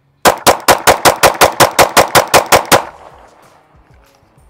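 Shadow Systems MR920 9mm pistol fired in a rapid mag dump: about fourteen shots at roughly five a second, ending abruptly near three seconds in with a short echoing tail.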